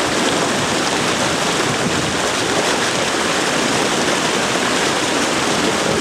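Many spawning carp thrashing together in shallow water, a continuous, steady splashing and churning.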